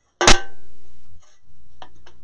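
A handheld metal hole punch snapping shut as it punches a hole. One sharp click is followed by about a second of ringing, and a fainter click comes near the end.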